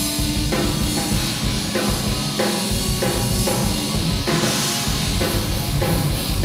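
Live metal band playing: loud electric guitars and a busy drum kit working through a rhythmic riff.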